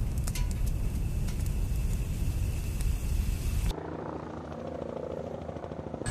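A large fire burning with a low rumble and scattered crackles. About three and a half seconds in it cuts suddenly to the quieter, steady beat of a helicopter's rotor.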